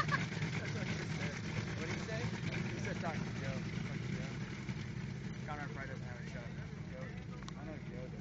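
An engine idling with a low, steady drone, under faint talk in the background.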